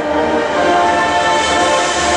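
Marching band's brass and woodwinds holding one long, loud chord, with the front ensemble's percussion underneath.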